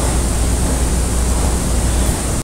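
Steady, loud hiss with a low hum underneath, an even noise with no words or distinct events.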